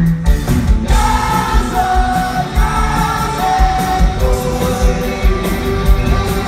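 Live pop-rock band playing at concert volume, heard from within the crowd: a male singer holds long sung notes over a steady kick-drum beat and guitars.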